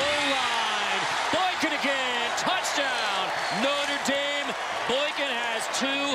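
Backing music track: a sung vocal line of held, arching notes over percussion, with sharp hits scattered through it.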